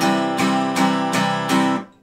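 Steel-string acoustic guitar strummed with even down strums on one chord, about two and a half strums a second, the chord ringing between them. The strumming stops shortly before the end.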